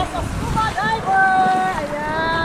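Wind buffeting and water sloshing against a camera held at the sea surface, with a high-pitched voice over it that holds and bends its notes.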